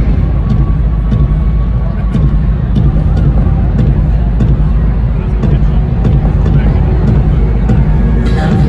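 Loud, bass-heavy concert music from a stadium sound system, heard through a phone's microphone, its deep low end filling the sound as a steady rumble.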